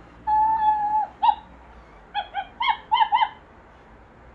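Interactive plush toy dog's speaker playing puppy sounds, set off as its head is stroked: a long steady whine that drops at its end, then a string of about six short high yips.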